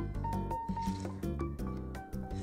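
Background music with held notes, over the soft squishing of dressed shredded cabbage and carrot being tossed with two large salad spoons.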